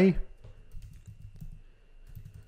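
Soft typing on a computer keyboard: a quick, irregular run of light key clicks.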